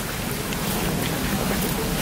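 Steady hiss of light rain falling on wet paving.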